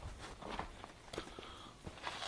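Faint, irregular footsteps of someone walking with the camera, with some low rumble.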